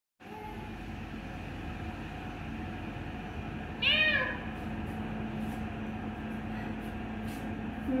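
A single cat meow about four seconds in, rising and then falling in pitch, over a steady low background hum.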